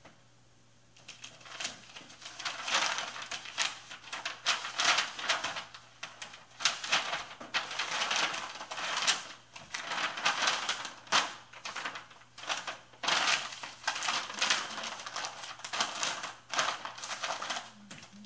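A shipping mailer and packing material crinkling and rustling as a sweater is packed in by hand: a dense, irregular run of crackles that starts about a second in.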